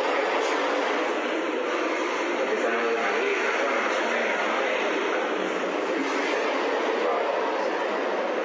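Steady, loud machinery noise of a postal parcel-sorting warehouse, with two people talking over it.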